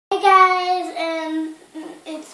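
A young girl's voice in a drawn-out, sing-song delivery: two long held notes, the second a little lower, then a few short, softer sounds near the end.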